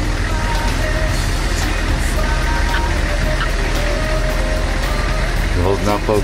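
Steady engine drone and road noise inside a military vehicle's cabin while it drives in convoy, with faint music in the background and a voice breaking in near the end.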